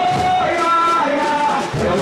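Male samba singer singing through a loudspeaker system, holding long notes over samba music with backing singers.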